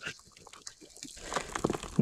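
Gloved hand scraping and digging through loose dirt and gravel, with small stones clicking and crumbling. It gets louder in the second half.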